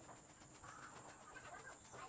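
Near silence: faint outdoor background with a few faint bird calls.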